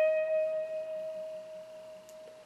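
A single high note on an electric guitar, the second string fretted at the 17th fret, ringing on and slowly fading away.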